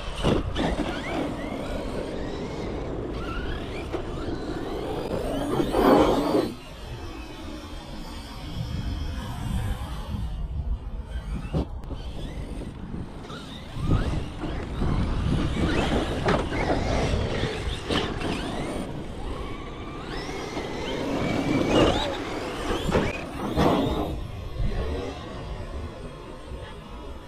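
Large radio-controlled monster truck's electric drive whining up and down with the throttle in repeated bursts, loudest about six seconds in and again around twenty-two seconds, over a low rumble of the tyres on the grass.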